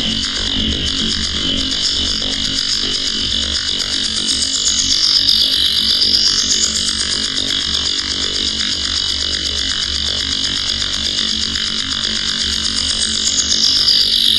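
Harsh electronic feedback noise run through an analogue amp-simulation plugin: a dense hissing wash over a low rumble. A bright band in it dips in pitch and rises again about four seconds in, and once more near the end.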